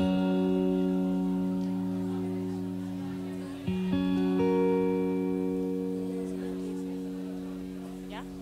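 Solo guitar playing slow chords, one struck at the start and the next a little under four seconds in, each left to ring and slowly fade.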